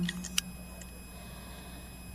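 A short pause in a live, mostly unaccompanied female vocal performance. A held sung note fades out at the start, a sharp click follows about half a second in, then there is only faint room noise with a steady low hum.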